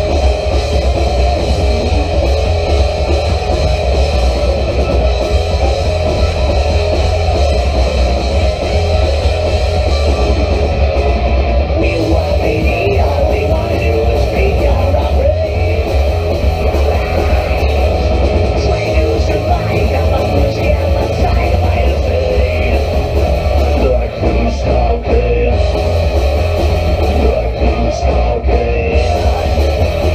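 A live horror punk rock band playing loud and without a break: distorted electric guitars, bass and drums, with a heavy low end.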